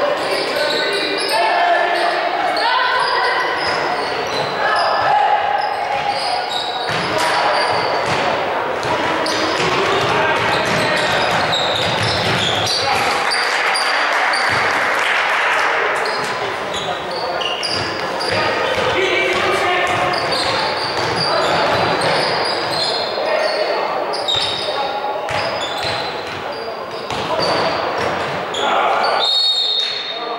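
A basketball game in an echoing sports hall: the ball bouncing on the wooden court, players' shoes squeaking in short high chirps, and players shouting and calling throughout.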